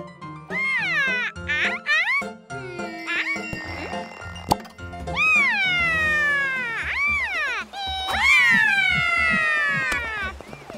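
High-pitched cartoon vocal cries, long swooping calls that rise and fall in pitch, growing longer and louder in the second half, over a children's music backing with a bouncy bass line.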